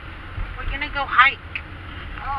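Steady low rumble of a car driving, heard from inside the cabin, with voices talking over it about halfway through.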